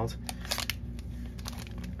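Plastic foil wrapper of a Donruss Elite football card value pack crinkling as it is gripped and picked up. There is a quick cluster of crackles in the first second, then faint rustling, over a steady low hum.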